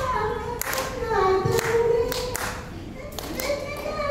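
A woman singing long, sliding notes into a microphone without instruments, with hand claps keeping a steady beat a little faster than once a second.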